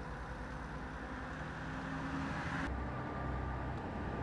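A motor vehicle's engine running steadily with a low rumble, the sound changing abruptly and growing heavier in the low end about two-thirds of the way through.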